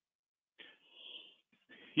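Faint breathing from a person on a video call: two soft breaths, the first a little under a second long and the second shorter, with dead silence between and before them.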